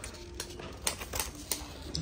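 A few short, sharp clicks and taps as a faux-leather ring-binder planner is handled: pulled from a shelf, its snap-button strap undone and the cover opened.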